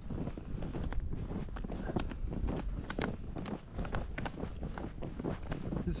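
Snowshoe footsteps tramping through deep snow in quick, irregular steps, with wind rumbling on the microphone.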